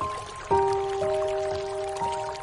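Slow, soft piano notes ringing and fading over a steady hiss of rain, with the loudest note struck about a quarter of the way in.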